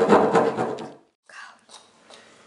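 Small folding saw blade of a pocket knife rasping through a piece of scrap wood. It cuts off abruptly about a second in, leaving only faint handling sounds.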